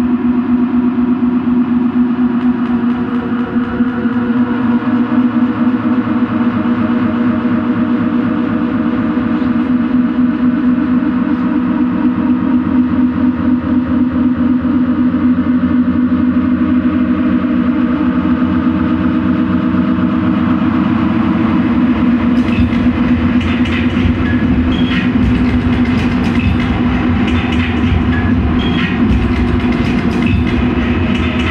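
Experimental turntable-and-looper music: a dense, droning loop built on a steady low tone with a fast, even rattling pulse. From about two-thirds of the way in, sharp clicks and crackles are layered on top.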